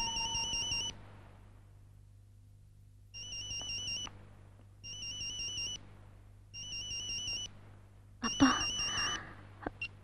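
Mobile phone ringing: a warbling, two-pitched electronic ring, about a second per ring, five rings with short gaps.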